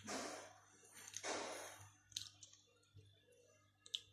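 Faint handling sounds of crunchy chocolate balls being set by hand on top of a cake: two soft rustles, then a few light clicks.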